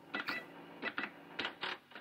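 Cash-register sound effect: a run of short mechanical clicks and rattles, loosely in pairs, fading out.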